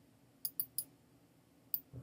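Computer mouse clicking: three quick clicks about half a second in, then a single click near the end, over faint room tone.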